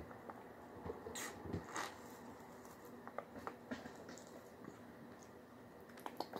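Faint scattered clicks and a couple of short rustles, the loudest about one to two seconds in. They are small mouth and handling noises while a foil drink pouch is tasted.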